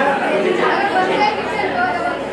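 Several voices talking over one another: a chatter of people's speech.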